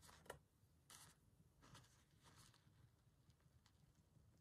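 Near silence, with a few faint scratches of a pen tip drawing on fabric in the first two and a half seconds.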